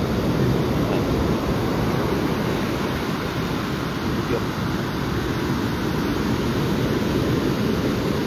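Steady rush of ocean surf breaking on the beach, with wind on the phone's microphone.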